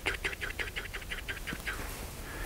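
A man's voice in a fast run of breathy, voiceless syllables, about seven a second, fading out near the end.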